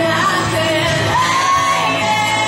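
Karaoke singing: a lead voice sings over a recorded pop backing track, sliding up into one long held note about halfway through.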